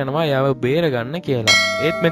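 A voice talking, then about one and a half seconds in a single sudden bell-like metallic chime whose ringing tones linger and fade.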